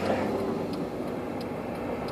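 Steady low hum and hiss inside a car's cabin, even throughout with no sharp events.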